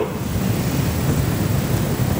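Breath blowing onto a close desk microphone: a steady rush of noise, like a long sigh, as loud as the speech around it.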